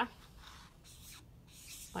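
Tombow brush pen tip rubbing on Bristol paper as letters are drawn, a faint scratchy hiss in a few strokes.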